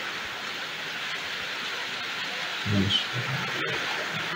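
Steady hiss of rain falling, even and unbroken, with a brief low voice sound a little before the end.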